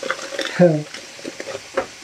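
Vegetables and fried tofu sizzling steadily in a frying pan on the stove, with a few light rustling clicks as a foil seasoning packet is handled.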